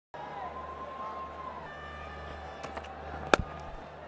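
Stadium crowd murmur over a steady low hum, then a single sharp crack about three and a half seconds in: a cricket bat striking the ball.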